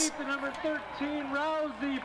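Speech: a voice talking at a lower level, its words not made out.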